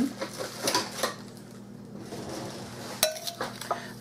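Metal spoon clinking against a glass bowl while stirring sugared sliced strawberries: a few scattered clinks at first, then a quick run of them near the end with a brief ring from the glass.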